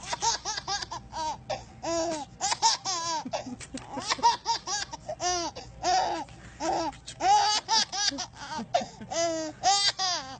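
A baby laughing in quick, repeated high-pitched bursts, over and over.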